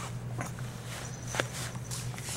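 Faint soft clicks and rustles, one sharper click about a second and a half in, over a steady low hum.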